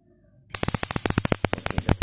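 Homemade spark gap Tesla coil switched on about half a second in: its spark gap firing in a rapid, irregular crackle of snapping sparks, over a steady high-pitched whine from the high-voltage supply.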